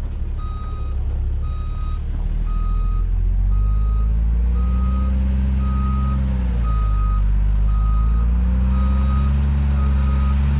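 Dump truck backing up: its reversing alarm beeps steadily, about one beep every three-quarters of a second, over the diesel engine. The engine gets louder about three seconds in, revs up, drops briefly past the middle and revs up again.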